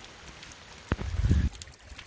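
Faint dripping and trickling of water with scattered small ticks. About a second in there is a sharp click, then a brief low rumble that is the loudest sound.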